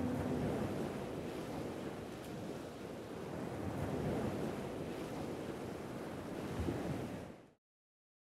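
Sea surf washing up a sandy beach, a steady rush of breaking waves that swells and ebbs, then cuts off sharply about seven and a half seconds in.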